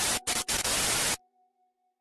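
Glitch static sound effect: an even hiss of TV-style static that drops out twice briefly, then cuts off suddenly about a second in.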